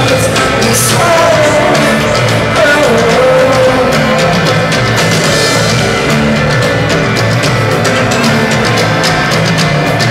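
A live rock band playing loud, with drums, guitars and a sung vocal line that slides in pitch over the first few seconds, heard over the venue PA from the audience.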